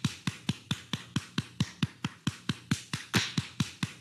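A rapid, even run of sharp percussive clicks, about four and a half a second, each ending in a short low falling thud, like a beat or mouth pops.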